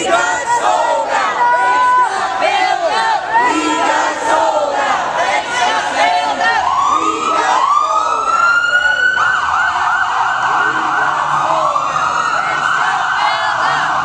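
A crowd of protesters shouting, then about six seconds in a police car siren starts, rising in repeated sweeps and continuing as a wavering wail over the shouting.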